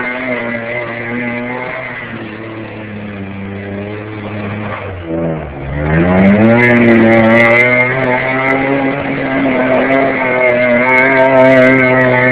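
SUV engine revving hard while the truck spins donuts in snow. The revs sag about five seconds in, then climb sharply and hold higher and louder.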